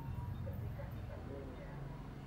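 Faint, indistinct background voices over a steady low hum.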